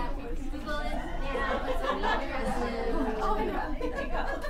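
Many people talking at once: the overlapping chatter of a roomful of people in pairs and small groups.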